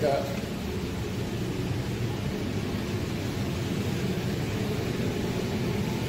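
Steady low rumble and hiss of indoor-range room noise, with rustling from the phone being handled as it is carried up to the target.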